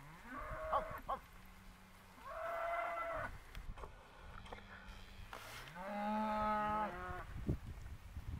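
Young Hereford and Angus-cross cattle (steers and heifers) mooing: three calls about a second long, spaced a couple of seconds apart, the last the longest, falling in pitch at its end. A few short knocks are heard near the start and near the end.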